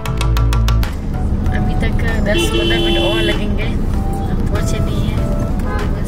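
Background music with a beat that cuts off about a second in, followed by road rumble heard from inside a car moving through city traffic, with vehicle horns honking around it, one held for about a second in the middle.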